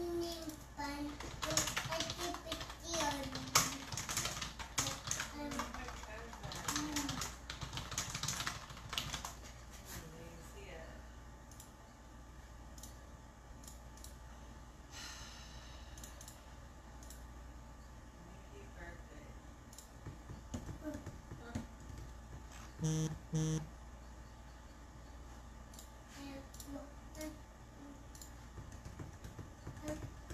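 Typing on a computer keyboard in bursts of clicks, mixed with an indistinct voice over the first third. Two short low tones sound about two-thirds of the way through.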